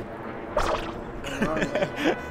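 A short, sharp whoosh about half a second in, with a fast swing of the camera, followed by a man speaking a few words near the end.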